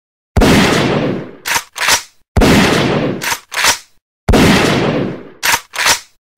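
Intro sound effect of three loud bangs about two seconds apart, each dying away over about a second and followed by two quick sharp clicks.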